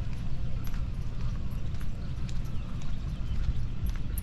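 Wind rumbling steadily on the camera's microphone outdoors, with scattered light irregular clicks and footfalls on concrete as the camera is carried along.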